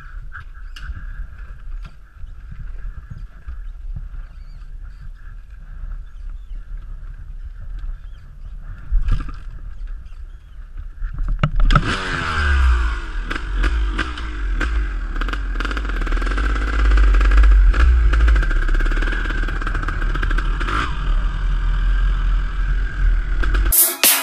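Dirt bike engine, quiet at first with a low rumble and a faint steady whine. About halfway through it gets loud and revs, its pitch rising and falling, and it cuts off suddenly near the end.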